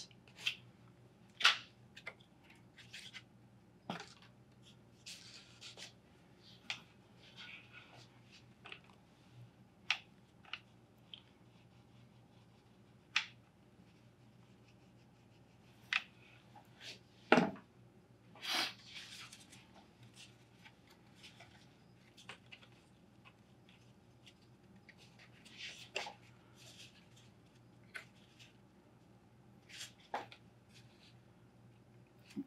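Scattered light taps, clicks and rustles of hands working cardboard and paper pieces with a hot glue gun, the loudest knock and rustle about two-thirds of the way through, over a faint steady low hum.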